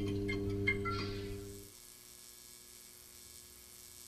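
Logo sting of an electrical hum with a few high chiming notes over it. About two seconds in it drops to a faint hum.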